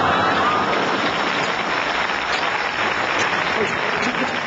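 Studio audience laughing and applauding in a steady, continuous wash of noise.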